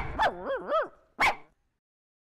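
A dog barking: two short barks, then a wavering whine that rises and falls, then one last bark a little over a second in.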